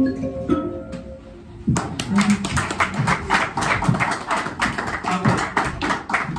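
The last plucked notes of a solo instrumental piece ring and fade, then about two seconds in an audience breaks into steady applause.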